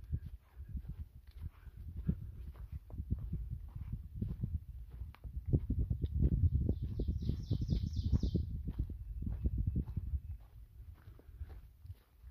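A hiker's footsteps on a dirt and leaf-litter forest trail, an irregular run of soft low thuds at walking pace. About seven seconds in, a bird sings a quick trill of repeated high notes lasting about a second and a half.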